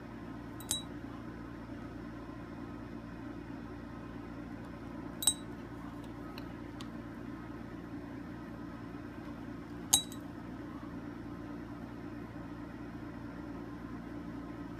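A glass dye dropper clinking against glass, three sharp clinks several seconds apart plus a couple of fainter ticks, over a steady low hum.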